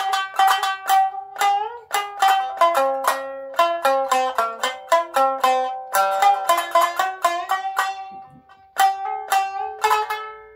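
Nagauta shamisen played solo with a bachi plectrum: a quick run of sharp, ringing plucked notes, some sliding in pitch. A brief lull comes about eight seconds in, then strong strikes resume.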